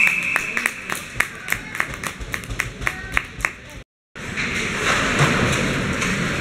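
A quick run of sharp, evenly spaced impacts, about four or five a second, over arena noise. The sound cuts out suddenly about four seconds in and comes back as general arena noise.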